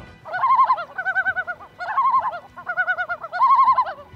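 Loon tremolo calls: a run of rapidly quavering calls, each under a second, shifting between higher and lower pitches.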